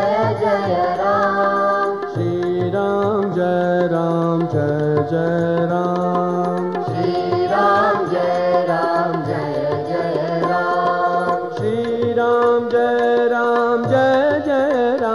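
Hindu devotional bhajan: a male voice chants a naamaavali, a litany of Rama's names, as a melody. Under it a sustained accompaniment steps between low notes, and a light regular tick keeps time.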